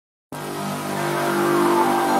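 Intro sound effect: a steady droning tone that starts suddenly a fraction of a second in and swells in loudness.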